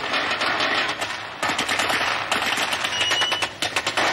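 Rapid machine-gun fire in long bursts, the shots coming too fast to count.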